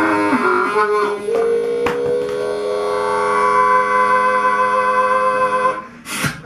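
Solo harmonica played close into a microphone: a few short notes bending in pitch, then one long note held for about four seconds that breaks off just before the end.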